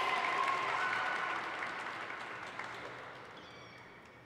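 Audience applause dying away steadily.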